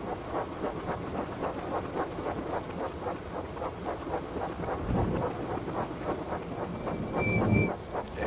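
A steam locomotive puffing in a rapid, even rhythm over stormy wind noise, played backwards. A faint, short high tone sounds near the end.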